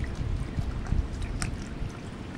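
Wind buffeting the microphone in uneven gusts, a low rumble, with a few faint scattered ticks over it.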